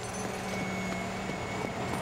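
Steady low machinery hum of construction-site background ambience, with a faint high tone held over it.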